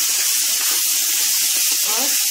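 Raw goat liver pieces sizzling in hot oil and fried masala in a wok as a wooden spatula turns them: a steady, even sizzling hiss as the wet meat meets the hot fat.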